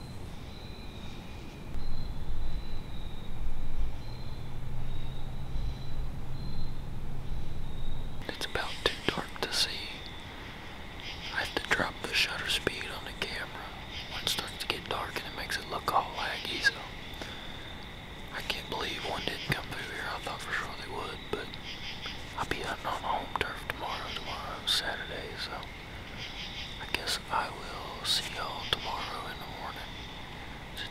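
A man whispering close to the microphone, starting about eight seconds in, over a steady high-pitched drone of insects. Before the whispering there is a low rumble.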